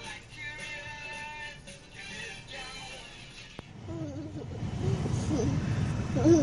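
Music with singing playing from a TV. About three and a half seconds in it cuts off with a click, giving way to a louder low rumble of a car in motion and a small child's voice.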